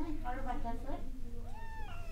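A cat meowing from inside a plastic pet carrier, ending with one drawn-out meow that rises and falls in pitch.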